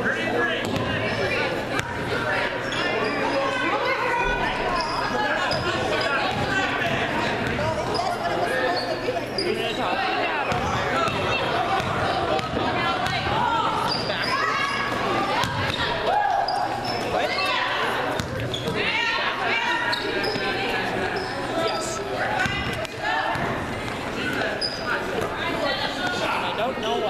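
Basketball bouncing on a hardwood gym floor, with people talking throughout in the echoing hall.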